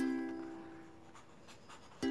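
Background music on a plucked string instrument: a held chord rings and fades away, and new plucked notes start right at the end. Under it, a marker pen faintly scratches on paper.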